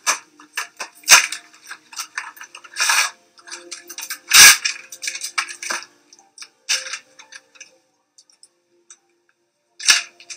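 Gloved hands handling medical supplies and their packaging on a countertop: a run of clicks, crinkles and rustles, the loudest a knock about four and a half seconds in, thinning out after about eight seconds.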